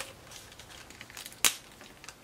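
Paper and sticker pieces handled by hand: faint rustling, with one sharp crackle about one and a half seconds in.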